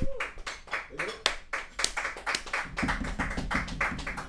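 A few people clapping by hand in a small room, with sparse, irregular claps.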